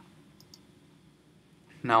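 Two faint computer mouse clicks in quick succession about half a second in, then quiet room tone until a man's voice comes in near the end.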